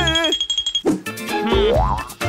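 Cartoon soundtrack music with a steady beat. A wordless, wavering vocal sound ends just after the start, and a rising, springy glide sound effect climbs through the second half.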